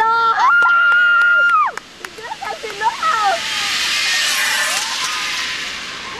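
A long, high-pitched held scream for nearly two seconds, then a few short voices, then a swelling high hiss of a zipline pulley running fast along the steel cable as the riders come in to the landing platform.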